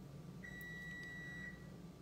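A single steady, high-pitched electronic beep lasting about a second, over faint room hum.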